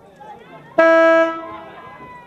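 A car horn sounds one short, loud toot that starts abruptly just under a second in and fades quickly, over a background of voices.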